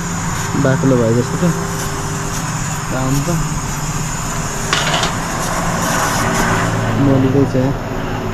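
A steady low mechanical hum under everything, with short snatches of voices and a single sharp knock about five seconds in.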